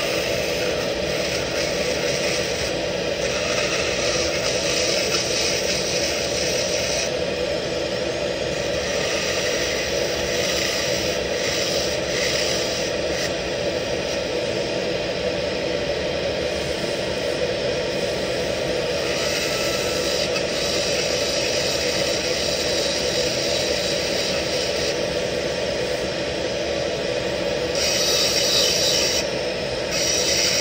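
Dental lab handpiece running steadily with a bur grinding a metal implant bar. The high grinding hiss swells and eases several times as the bur is pressed on and lifted off the metal.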